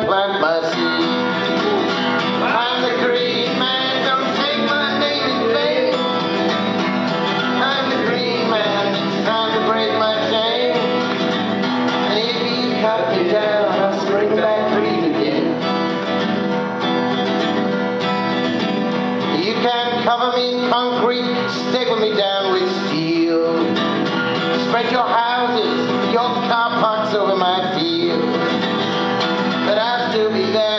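Strummed acoustic guitar playing a live folk song, steady throughout, with a melody line bending over the chords.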